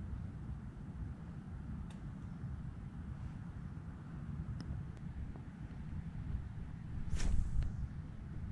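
Wind rumbling on the microphone, a steady low buffeting, with a louder brief rustle of handling about seven seconds in.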